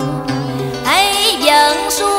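Cải lương music with a plucked string instrument playing bending, sliding notes from about a second in, in the pause between sung lines.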